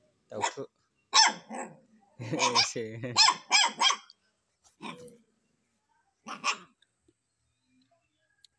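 A puppy barking in short yaps, several in quick succession in the middle, with a growl among them.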